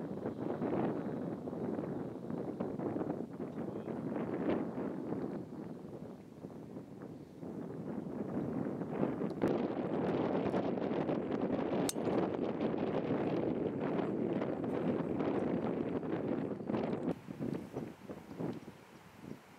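Wind buffeting the camera microphone, a steady rushing noise that swells and eases, with a single sharp click about two-thirds of the way through.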